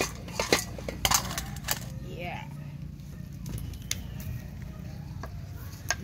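A few light clinks and rattles of dry roasted silverfish (omena) being moved about in a metal basin, mostly in the first two seconds, then a few faint ticks over a steady low hum.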